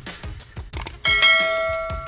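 Sound effects of a subscribe-button animation: two quick mouse clicks, then about a second in a bright bell chime that rings once and fades. Background music with a steady beat plays underneath.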